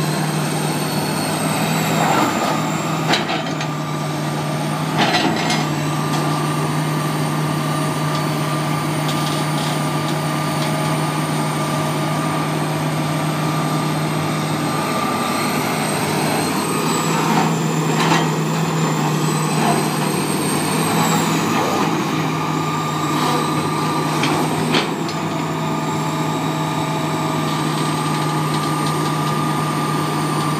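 Hitachi ZX330LC hydraulic excavator's diesel engine running steadily as the machine digs and swings, with a high whine that dips in pitch several times and a few knocks from the working gear.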